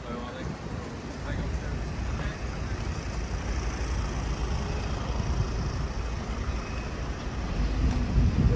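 Road traffic with a car running close by: a steady low rumble with tyre and engine noise.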